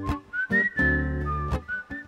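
Acoustic guitar strummed in a song's instrumental introduction, with a whistled melody gliding from note to note above the chords.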